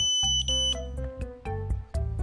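Small buzzer on a lithium-battery charging board sounding one steady high-pitched tone that cuts off suddenly under a second in. Background music with a steady beat plays throughout.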